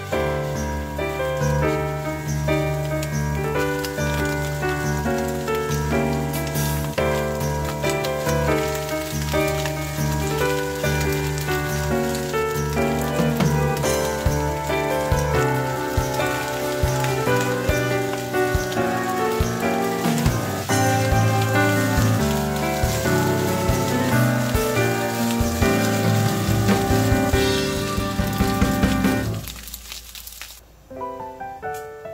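Bacon, egg and rice sizzling and crackling in a frying pan as a silicone spatula stirs them, under background music that stops shortly before the end.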